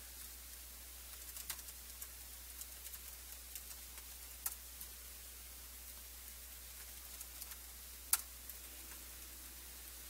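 Faint, scattered keystrokes and clicks on a laptop keyboard, in irregular taps with gaps, the sharpest click about eight seconds in, over a steady low room hum.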